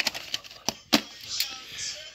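Several sharp plastic clicks and light clatter as a VHS clamshell case is opened and the cassette is handled.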